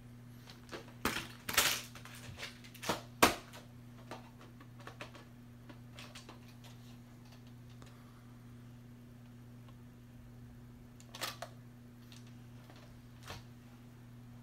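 Clicks and knocks of a plastic VHS clamshell case being handled. They come in a cluster over the first few seconds, the sharpest about three seconds in, and a couple more follow near the end, over a steady low hum.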